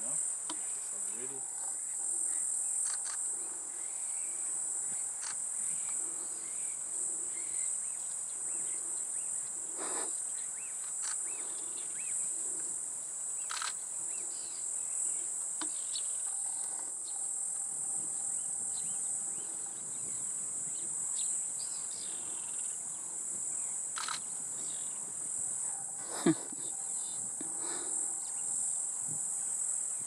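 Steady high-pitched buzzing of insects, with scattered faint clicks and one sharp click late on.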